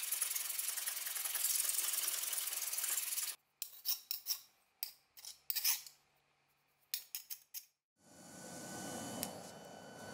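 Hand file scraping across the steel of an old belt knife blade, one continuous stretch of about three seconds, then a run of short separate strokes; the file bites, the sign that the blade is not hardened. About eight seconds in, a steady rushing noise from the fire of a homemade furnace takes over.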